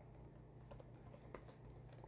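Faint typing on a computer keyboard: a handful of soft, irregular keystrokes as a word is typed into a text field, over a faint steady low hum.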